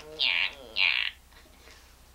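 High-pitched squeals from a person, two short ones about half a second apart, stopping about a second in.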